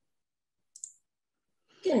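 A short, sharp double click of a computer mouse a little under a second in, amid otherwise dead silence; a woman starts speaking near the end.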